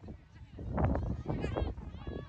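High-pitched shouted calls from women's voices across a soccer field in the second half, over gusty wind noise on the microphone that swells about a second in.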